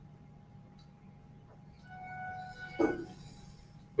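A short electronic chime of several steady tones starts about two seconds in and lasts nearly two seconds, with a single knock partway through.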